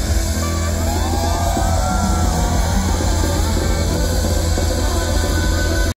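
A live pop band played loud over a festival PA, recorded from within the crowd, with a strong, steady bass under a melodic line. The sound cuts off suddenly at the very end.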